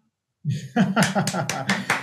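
A man laughing in quick bursts, about four a second, starting about half a second in.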